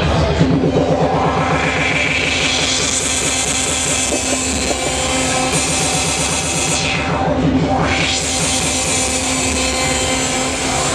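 Live turntablist DJ set played over a PA system: records cut and mixed by hand on two turntables and a mixer. The treble drops away and sweeps back up around seven to eight seconds in.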